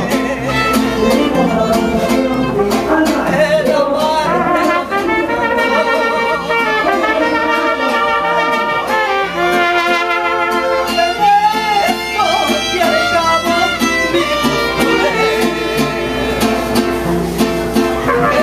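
Live mariachi band playing an instrumental passage of a ranchera: violins carry the melody over the strummed vihuela and the plucked bass of the guitarrón.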